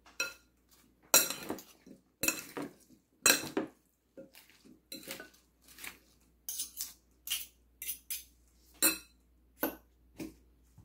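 A fork tossing salad in a mixing bowl, clinking and scraping against the bowl. Three longer, louder scrapes come in the first four seconds, then lighter clinks two or three times a second.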